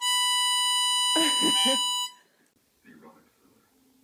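A steady electronic beep tone lasting about two seconds, cutting off suddenly, with a short vocal sound over its second half.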